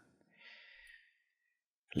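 A faint, short breath, about half a second long, taken close to a studio microphone during a pause in talk; a man's voice comes back in just before the end.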